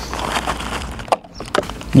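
Rustling and handling noise as an accessory bag is rummaged through, with a few light clicks and a brief lull just past halfway.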